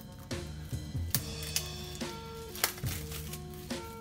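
Plastic shrink-wrap crinkling in a few sharp crackles as it is peeled off a deck of cards, over background music.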